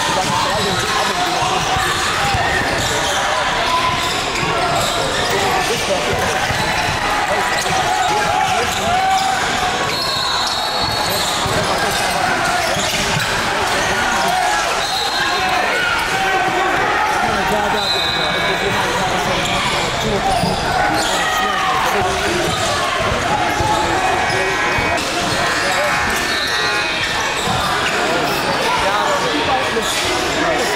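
Live sound of an indoor basketball game: a ball bouncing on the hardwood court, sneakers squeaking several times, and players and spectators calling out, all echoing in the gym.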